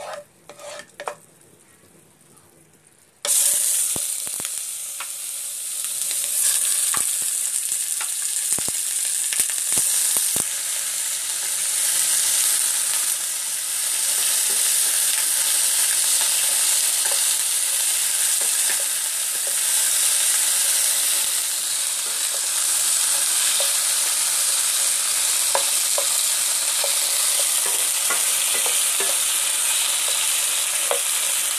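A few clicks of a utensil in a frying pan, then about three seconds in a loud sizzle starts abruptly as chicken wings go into hot oil. The frying hiss keeps going steadily, with occasional small clicks as the wings are moved in the pan.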